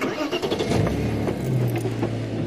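A game-drive vehicle's engine starting under a second in, then running at a steady idle.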